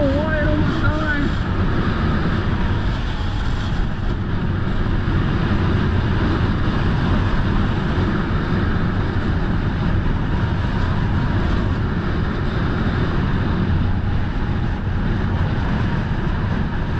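Steady rush of wind over the microphone mixed with a snowboard's edges and base scraping over packed, tracked snow while riding downhill. A short cry is heard in the first second.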